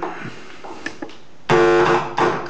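A couple of faint ticks, then about a second and a half in a sharp click and a sudden loud held musical chord.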